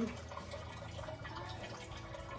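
Washing-machine grey water trickling and dripping from white PVC drain pipes into a plastic rain barrel, over a low steady rumble.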